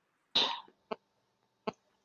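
A person clears their throat once over a video-call microphone, followed by two brief mouth clicks.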